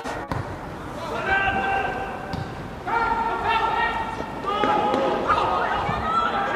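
Footballers shouting calls to one another on the pitch, in long held shouts, with a thud of the ball being kicked.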